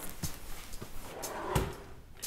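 Light clicks and knocks of small objects being handled, then a cabinet drawer being pulled open with a thump about a second and a half in.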